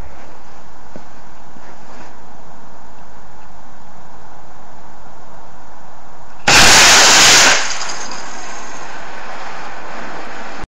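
Estes solid-fuel model rocket engine firing on a toy car: a sudden loud rushing hiss starts about six and a half seconds in, lasts about a second, then dies away over the next half second as the engine burns out.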